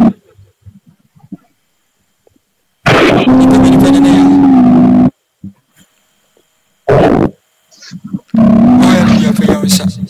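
A person's voice giving long, very loud cries, three times, each held on one steady pitch, with short silences between.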